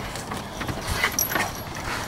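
Dog's feet knocking and scuffling on a wooden training platform as it grips and tugs a bite sleeve, with a handful of irregular knocks.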